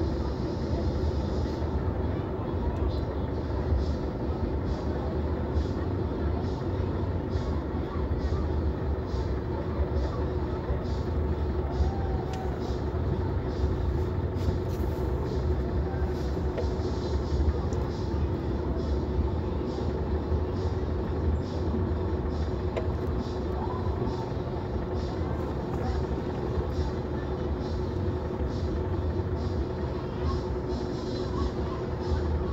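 Steady low rumble inside a car's cabin while it idles in stopped traffic, with muffled voices from outside and scattered light clicks.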